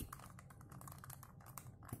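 Faint plastic clicks and rattles of a Rubik's Cube being picked up and turned over in the hands.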